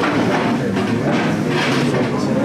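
A group of men's voices singing together, loud and continuous.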